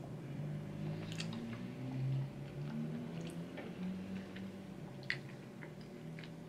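A person chewing a mouthful of lasagna with pineapple chunks, with small wet clicks of the mouth, and a low closed-mouth hum of the voice under it.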